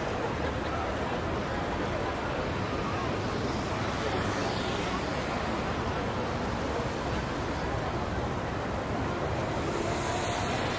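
Steady street ambience: a continuous wash of traffic noise with faint voices mixed in.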